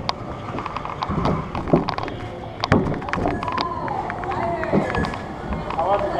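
Roller coaster train of an Intamin hydraulic-launch coaster rolling slowly, with scattered clicks and knocks from the cars and track. A voice is heard in the background about halfway through.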